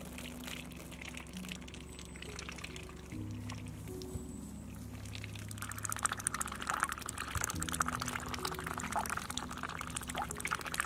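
Two ducks dabbling in a tub of water. Their bills make rapid splashing and slurping that starts a little past halfway, over background music with slow changing notes.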